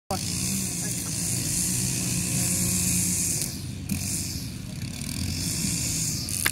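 Outdoor background: the steady low drone of a distant motor under a constant hiss, easing off about halfway through, with a faint tick or two.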